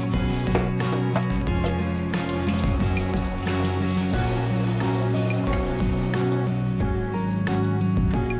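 Background music, with water running for several seconds in the middle as a cutting board and scallions are rinsed under the tap.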